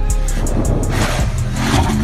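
A lifted off-road SUV's engine revving as it drives fast across a sand dune, with a loud rushing noise over the low engine rumble and the pitch rising near the end. A music track's drumbeat stops right at the start.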